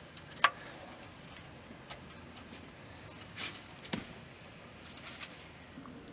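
Hand work on a car's oil filter: a few sharp clicks and light knocks as a filter magnet is fitted to it, over a quiet background.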